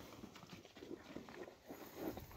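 Faint, irregular licking and munching of cattle eating dry corn meal from a trough.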